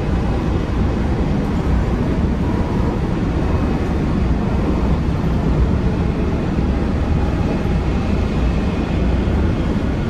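Steady running noise of a WMATA Metrorail Breda 3000-series railcar in motion, heard from inside the car: a continuous low rumble of wheels on track with no distinct events.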